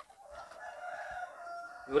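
A rooster crowing once, one long call of about a second and a half, fainter than the voices around it.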